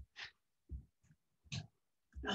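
A woman breathing, three short, faint breaths through the nose and mouth during a slow arm-swinging exercise.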